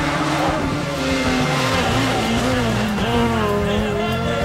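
A rally car passing, its engine noise swelling through the middle and easing near the end, over background music.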